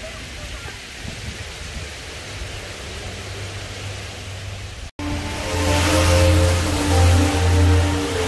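Steady rush of water cascading down the tall curved walls of a wall waterfall. About five seconds in, the sound cuts out for an instant and music with sustained notes and a deep bass takes over, louder than the water.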